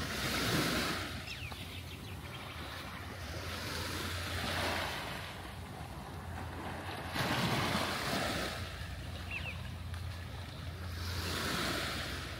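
Small sea waves lapping and washing over a rocky shore and wet sand, rising and falling in four washes about every three to four seconds.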